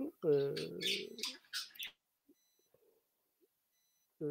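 A man's voice over an online call for about the first two seconds, then near silence with only a faint steady high-pitched whine.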